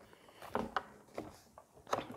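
Light clicks and rubbing of hard plastic parts as the vacuum tube is fitted onto a Stihl SH 86C blower housing, a handful of short faint knocks spread through the moment.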